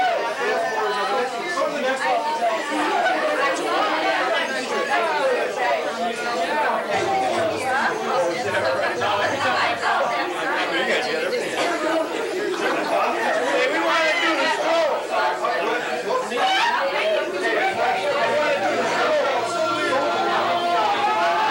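Crowd chatter: many people talking over one another at once, at a steady, fairly loud level.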